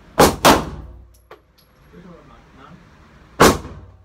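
Glock 9mm pistol firing three shots in an indoor range: two in quick succession, about a quarter second apart, right at the start, then a single shot about three seconds later, each followed by a short echo off the range walls.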